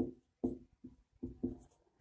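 Marker pen writing on a whiteboard: about five short, separate strokes, each with a faint squeak.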